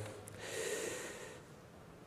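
A man drawing a breath in close to a microphone: a soft hiss lasting about a second, then fading.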